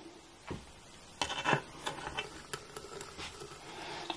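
Metal needle-nose pliers lightly clicking and tapping against a ceramic sink's drain, about half a dozen irregular small ticks, as hair is picked out of the blocked plughole.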